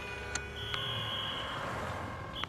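Steady electronic beep tones, a higher tone about half a second in that gives way to a lower one, with a few sharp clicks.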